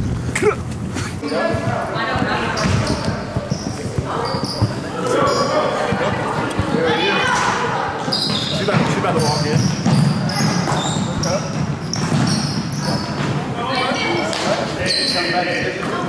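Several basketballs bouncing on a hardwood gym floor, with many overlapping children's voices in the hall.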